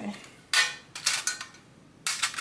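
Pens and pencils clattering in a small pencil tin as it is handled. There is a sharp clatter about half a second in and a smaller click just after.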